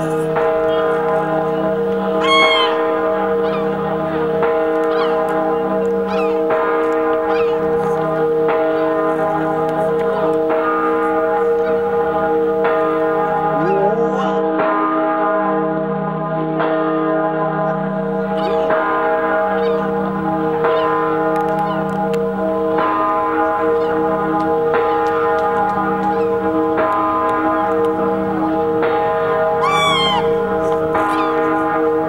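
The great bourdon bell of Notre-Dame de la Garde tolling, its deep tones ringing on and swelling in slow pulses. A seagull cries about two seconds in and again near the end.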